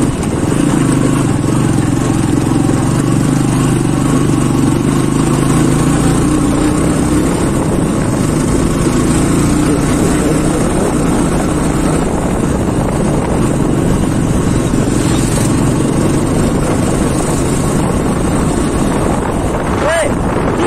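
Motorcycle engine running steadily under way, with wind noise.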